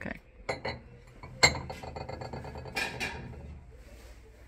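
Ceramic dishes being handled and set down on a wooden cabinet: a few light taps, then one sharp clink about a second and a half in that rings briefly, and a short scrape near three seconds.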